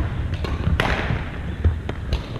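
Badminton rally on a wooden gym floor: a few sharp racket strikes on the shuttlecock and thudding footsteps, the strongest crack about a second in and another near the end, over the echoing rumble of a large gymnasium.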